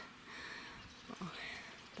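Quiet rural garden background with a faint bird call about one and a half seconds in, and a brief spoken exclamation just before it.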